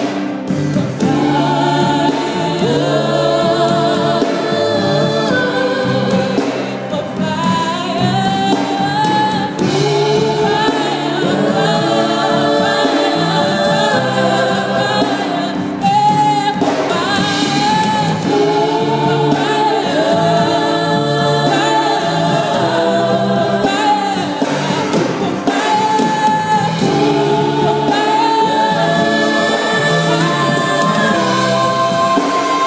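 Live gospel song: a female lead singer with a group of backing singers, accompanied by a band.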